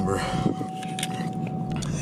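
Ford Mustang GT's 5.0 V8 idling, heard from inside the cabin as a steady low rumble. A thin steady high tone runs over it and stops shortly before the end.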